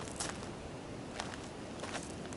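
Quiet outdoor background noise with a few faint taps.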